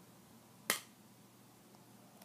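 A single short, sharp click about two-thirds of a second in, against quiet room tone.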